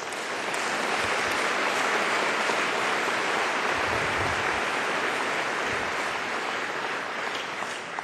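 Large audience applauding, building up over the first second, holding steady, then easing off near the end.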